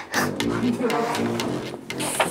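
Digital piano played in a halting practice run, notes and chords struck one after another. A woman's voice sounds briefly over the notes.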